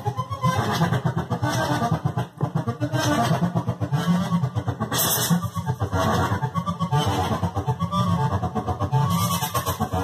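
Access Virus virtual-analogue synthesizer playing a patch: a dense, continuous run of notes with a brief dip about two and a half seconds in.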